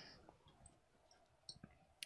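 Near silence: room tone with a few faint, short clicks, two of them close together about a second and a half in.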